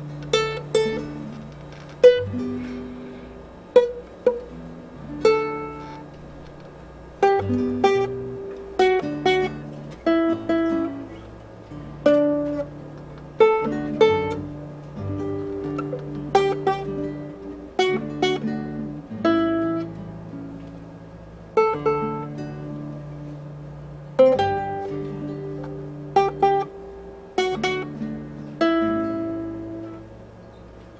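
A ukulele and a classical guitar playing a slow duet: separate plucked notes ring and fade one after another, over held lower notes.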